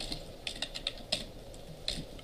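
Computer keyboard being typed on, an irregular run of separate key clicks.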